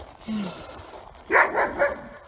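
A dog barking: a quick run of three barks about a second and a half in.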